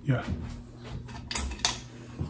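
Two sharp mechanical clicks about a third of a second apart, about a second and a half in, after a short spoken 'yeah', over a low steady hum.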